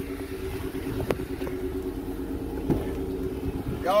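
Steady low hum of a running car engine, heard from inside the car, with a couple of faint knocks.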